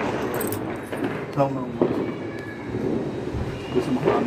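Indistinct voices speaking softly over a steady background of noise, with one brief voiced phrase a little over a second in.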